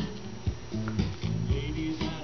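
A record playing on a 1970 Seeburg USC1 Bandshell jukebox: a song with sustained bass notes and a steady beat about twice a second.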